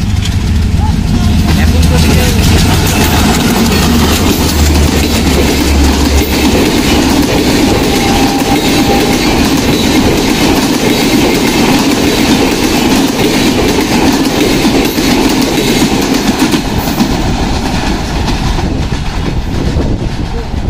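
Diesel locomotive's engine running hard as it passes close by, followed by the continuous rumble and wheel-on-rail clatter of a long rake of passenger coaches rushing past at speed.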